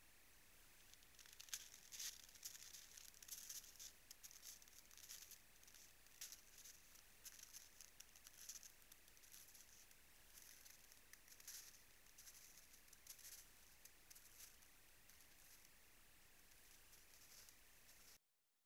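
Faint, irregular crunching of a roe deer's hooves in snow as it shifts and walks away, over the trail camera's steady hiss; the crunching thins out and stops a few seconds before the end.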